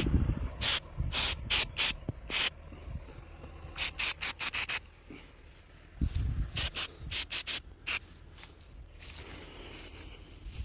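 Aerosol can of penetrating spray squirted in a string of short hissing bursts, coming in three or four quick groups, worked into rusted fittings to loosen them.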